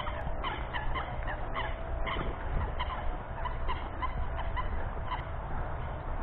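A flock of Canada geese calling on the water: many short, overlapping calls following one another without a break.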